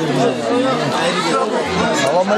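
Chatter of several men talking over one another at a crowded table.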